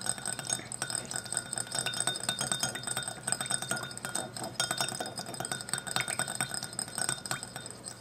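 Metal mini whisk beating rapidly against the inside of a small glass bowl, a fast, continuous run of light clinks with a faint glassy ring, as oil is whisked into vinegar to emulsify it.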